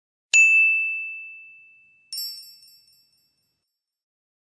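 An end-card sound effect: a single bright bell-like ding that rings out and fades over about two seconds, followed by a short, higher, sparkling chime of several tones that dies away within a second.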